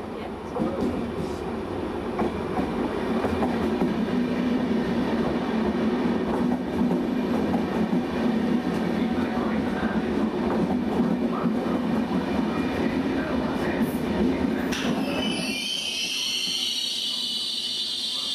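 Trenitalia double-deck regional train rolling into the platform with a heavy rumble and wheel clicks over the rail joints. About fifteen seconds in, the rumble falls away and a high, wavering squeal with hiss takes over as the brakes slow the train nearly to a stop.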